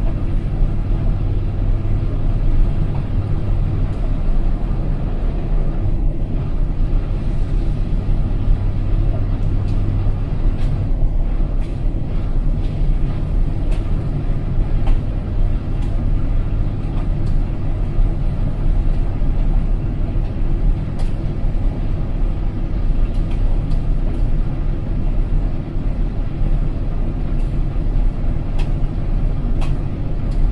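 Indesit front-loading washing machine spinning its drum with a steady low motor hum, held at a low spin speed because the load is unbalanced.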